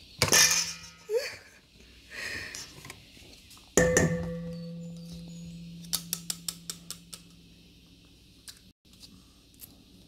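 Metal kitchenware clattering against a stainless steel mixing bowl: a clatter at the start as the hand mixer's beaters are ejected, then a sharp knock about four seconds in that leaves the bowl ringing and dying away over several seconds, then a quick run of light clinks.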